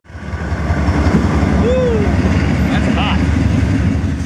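A loud, steady low rumble like a heavy engine running, with a few short rising-and-falling tones over it about halfway through and again near three seconds in.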